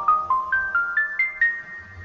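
Logo intro jingle: a quick run of bright, struck mallet-percussion notes climbing in pitch, about four a second. It ends about a second and a half in and the last note rings away.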